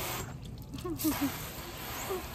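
Water spraying onto a car in a steady hiss that cuts off suddenly about a second in, with a short laugh over it.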